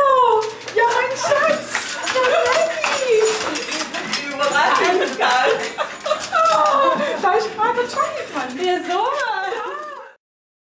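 A dog whining excitedly in long, high, rising and falling cries, mixed with voices and rustling; the sound cuts off abruptly at the end.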